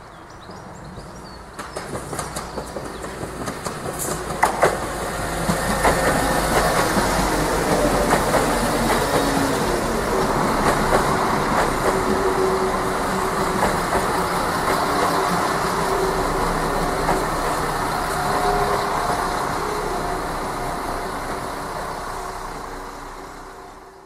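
Diesel multiple unit approaching and running past along the platform line: rhythmic wheel clicks over the rail joints start about two seconds in, then a steady loud rumble with a held engine note, easing off near the end.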